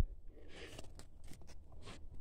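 Rock specimens being picked up and handled on a dirt floor: faint scraping and shuffling with a few light clicks of stone.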